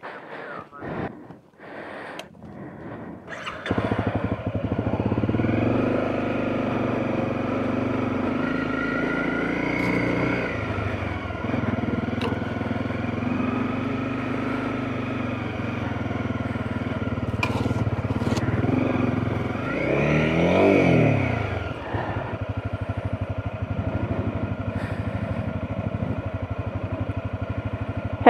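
Honda CRF250 Rally's single-cylinder engine running as the motorcycle rides slowly down a rocky dirt track, with a brief rev up and back down about twenty seconds in, then running lower and steadier. Before the engine sound, the first few seconds hold scattered knocks and clatter.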